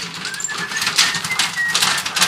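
Wheelbarrow rolling over a sandy gravel track with footsteps, an irregular crunching and rattling, with a few short high chirps over it.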